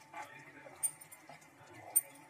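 A plastic spatula stirring thick curry in a nonstick frying pan, with two sharp clicks about a second apart where it knocks against the pan.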